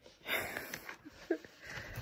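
A woman's breathy exhale, a tired sigh, lasting under a second, followed by a few faint short breathy voice sounds.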